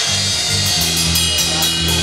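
Live rock trio playing: electric guitar, bass guitar and drum kit. The bass notes move, and cymbals keep a steady beat.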